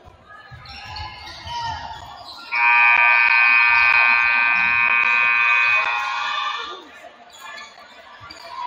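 Gymnasium scoreboard horn sounding one steady, loud blast of about four seconds, signalling the end of a timeout, over crowd chatter.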